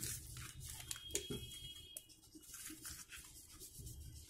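Sheet paper rustling and crinkling in short, irregular bursts as a folded paper strip is handled and moved about.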